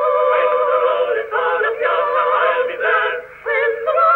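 Singing played from an old acoustic recording. It sounds thin, with no bass and no top, and the melody wavers with vibrato. It breaks briefly between phrases about a second in and again near the end.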